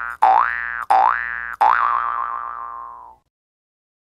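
Cartoon 'boing' sound effect played in a quick string: springy twangs, each starting with a click and sliding up in pitch, less than a second apart. The last one is held longer and fades out.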